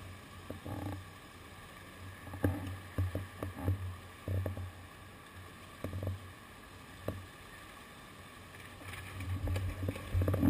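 Low rumble of city street traffic that swells and fades, with a few scattered knocks, getting louder near the end.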